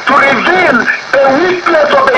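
Speech only: a voice talking with sweeping rises and falls in pitch, in the narrowed sound of a radio broadcast.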